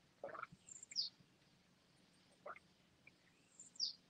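Faint bird calls: two short, high chirps that fall in pitch, about three seconds apart. A soft sip from a coffee mug comes near the start.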